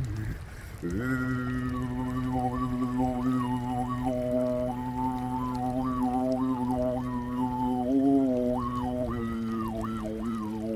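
A man's voice overtone singing: one long, low held note, with whistly overtones above it stepping up and down in a slow melody. The note starts about a second in, after a brief pause.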